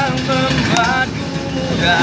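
Acoustic guitar strummed while men's voices sing an Indonesian pop ballad, with the voices loudest in the first second.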